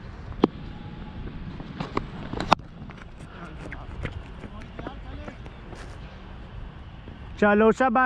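Steady low rumble of open air on a helmet camera's microphone, with a few sharp clicks in the first three seconds; near the end a man shouts loudly.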